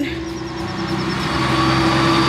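Tractor-trailer truck driving past on the road, its engine and road noise growing steadily louder.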